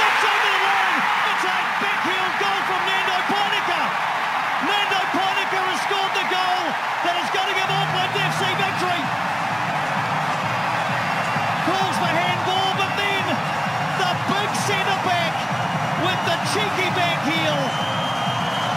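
Stadium crowd roaring and cheering at a last-minute winning goal, loudest at the very start, with many voices shouting and singing through it.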